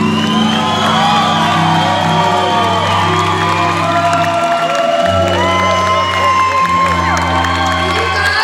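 Live rock band of drums, bass, guitars and keyboard playing a slow song under a female lead vocal, with audience members whooping and cheering over the music. A phone recording from the crowd, so the sound is a bit muffled.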